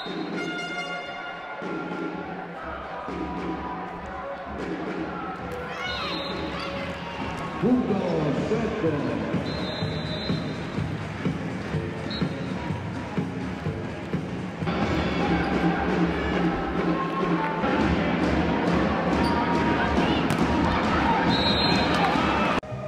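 Indoor volleyball match sound in a large hall: a volleyball bounced on the court and struck during play, with voices and arena music in the background.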